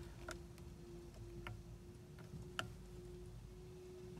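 A few faint, sharp clicks about a second apart as the TRIP button on the Jaguar XF's indicator stalk is pressed repeatedly, over a low steady hum.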